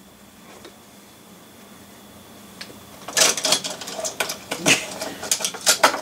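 Quiet room tone with a faint steady high whine, then, from about halfway, a quick run of sharp clicks and rattles from diecast model cars being handled on a desk.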